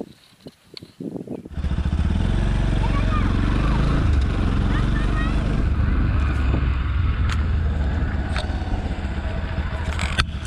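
Motorcycle riding at a steady cruise, its engine and heavy wind rumble on the microphone starting abruptly after a quiet opening of about a second and a half.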